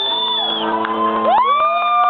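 Karaoke backing track holding its closing chord while the audience whoops and cheers, with a long high whistle fading out about half a second in.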